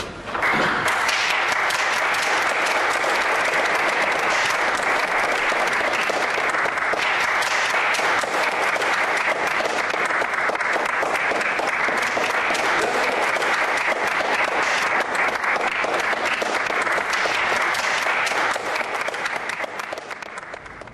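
An audience applauding steadily, starting just after the music stops and fading away near the end.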